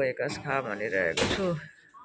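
Mostly speech: a woman talking, with a brief sharp noise about a second in, and quieter after about 1.7 s.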